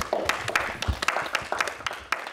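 A small group of people applauding, their individual hand claps distinct and irregular.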